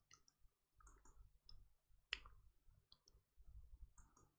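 Near silence broken by a few faint computer-mouse clicks, with one sharper click about two seconds in.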